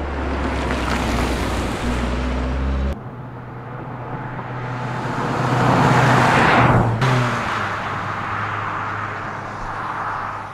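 2011 MINI Cooper S Countryman's turbocharged 1.6-litre four-cylinder engine and tyres as the car drives past, heard across several abrupt shot changes. The sound swells to its loudest in a close pass about six seconds in, then cuts and fades as the car pulls away.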